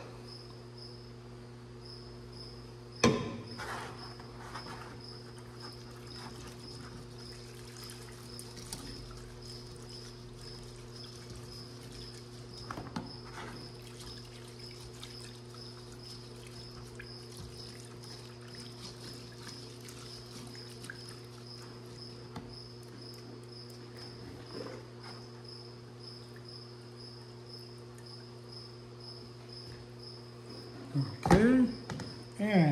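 Quiet handling noises of fingers picking through a drained bee sample in a metal colander, with one sharp knock about three seconds in and a few lighter knocks later. Under it runs a steady low hum and a faint high chirp repeating evenly.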